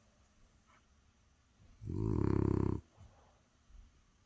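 French bulldog snoring: one loud, fluttering snore about two seconds in, lasting about a second, followed by a couple of faint breaths.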